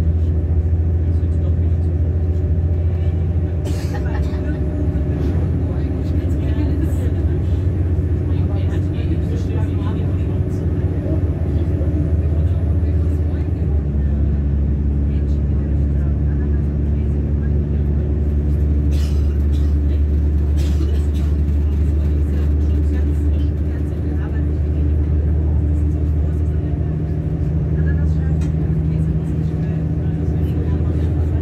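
Steady rumble inside a moving diesel regional train, with a low engine drone whose pitch shifts about halfway through and a few clicks from the wheels on the track.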